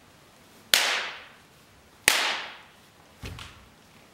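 Two sharp cracks of wooden practice swords (bokken) striking each other, about a second and a half apart, each trailing off in the hall's echo, followed by a softer, duller knock.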